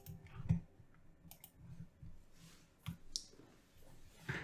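A few faint computer mouse clicks: one about half a second in, confirming the erase dialog, and two more close together near three seconds.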